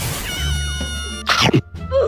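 Edited comedy audio: a short sound-effect sting of ringing tones over a noisy burst, then a single falling cat meow about one and a half seconds in.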